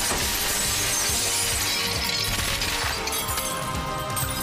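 Glass shattering and debris falling, over dramatic score music; the crash dies away about two and a half seconds in, leaving the music.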